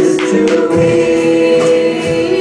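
Live worship band with singers holding a long sung note over keyboard, acoustic guitar and bass, with a few percussive strikes near the start.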